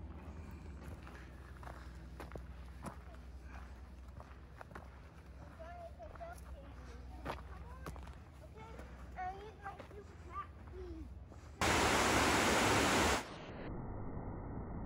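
Outdoor trail ambience: scattered footsteps on a dirt path and faint voices over a low, steady background hiss. About 11 s in, a loud rush of falling water from a stepped waterfall starts abruptly, lasts about a second and a half, and gives way to a duller, steady rush.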